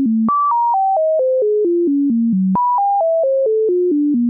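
Sine-wave oscillator on a Moog Modular V software synthesizer, its pitch set by a sample-and-hold sampling a descending sawtooth at about 4.4 Hz: a staircase wave. A pure tone drops in even steps, about four a second, from high to low, then jumps back up and steps down again, twice.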